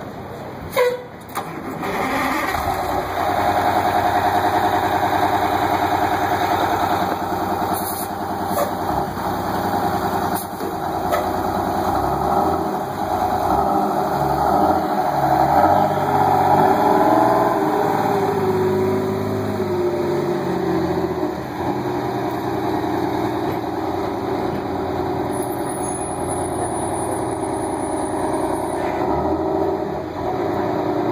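Crown Supercoach Series 2 school bus's rear-mounted engine heard close up. A sharp knock comes about a second in, then the engine comes up loud about two seconds in. It runs steadily, rising and falling in pitch through the middle as the bus pulls away. A brief high squeal comes a few seconds before the end.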